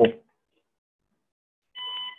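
A spoken word ends, then silence, then near the end a short electronic beep, a steady tone of about half a second.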